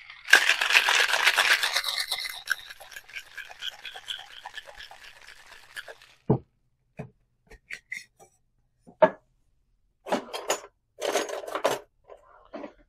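Ice rattling hard inside a metal cocktail shaker as it is shaken for about six seconds, loudest at first and then tapering off. A few sharp knocks and clinks follow, and two short clattering bursts near the end.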